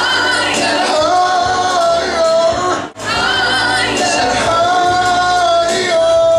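A man singing live into a handheld microphone over backing music, holding long, wavering notes in the second half. The sound cuts out briefly about three seconds in.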